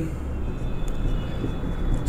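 A steady low background rumble, with a faint high squeak of a marker writing on a whiteboard through the middle.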